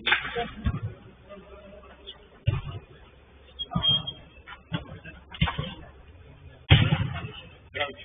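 Indistinct men's voices calling out during a five-a-side football game, with several sudden thumps of the ball being kicked; the loudest thump comes near the end.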